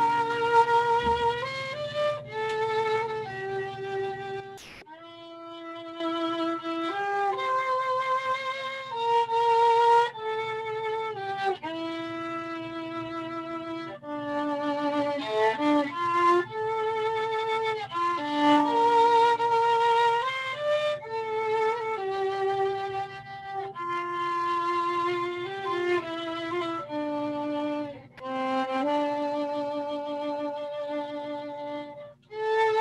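Solo violin playing a slow melody of long held notes with vibrato, heard over a video call, with a brief break and a click about five seconds in.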